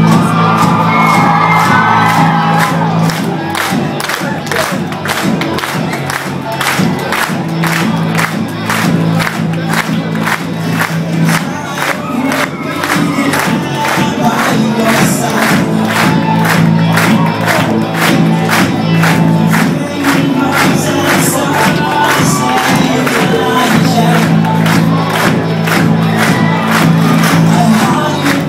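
Live rock band with electric guitars and keyboard playing an instrumental passage over a steady, quick beat of sharp strokes, with held low notes that come and go, while a large crowd cheers and shouts.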